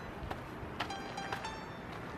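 Sparse background piano music: a few soft single notes over a faint hiss.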